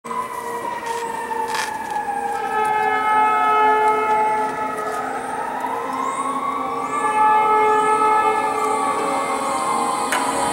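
Emergency vehicle siren with a slow wail: its pitch falls, rises again about halfway through, then falls off, over steady held tones.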